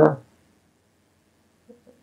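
The last syllable of a man's speech trails off at the start, then near silence: quiet room tone with a faint, brief low murmur near the end.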